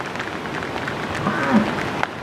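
Bison hooves clicking lightly on an asphalt road as the animals walk past, over a steady crackly background noise. About a second and a half in there is a brief low, voice-like sound.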